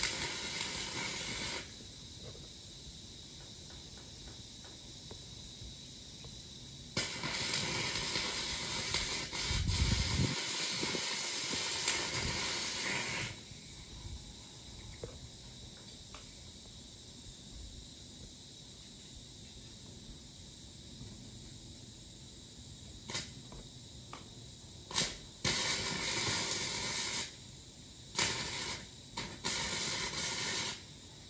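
Stick-welding arc powered by three car batteries wired in series for 36 volts, crackling and hissing as the rod burns. It comes in separate runs: a short one at the start, a longer one of about six seconds in the middle, and several short tacks near the end.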